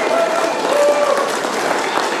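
Audience applauding, with scattered voices cheering over the clapping.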